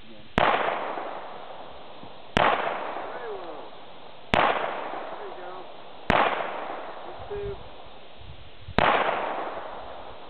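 Handgun fired five times at a slow, deliberate pace, about two seconds between shots, each shot followed by a long fading echo.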